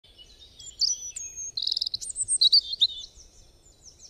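Songbirds chirping and singing: a rapid string of high whistles, chirps and short trills, loudest in the middle and fading out near the end.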